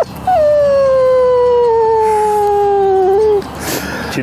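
A long, howling victory cheer from a man's voice: one held note lasting about three seconds that slides slowly down in pitch before breaking off.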